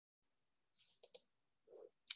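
Near silence, broken about a second in by two quick clicks a tenth of a second apart: a computer mouse being clicked.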